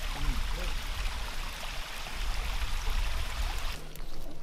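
Forest creek running steadily, with a low rumble on the microphone underneath and faint voices at the start. The water sound cuts off abruptly just before the end.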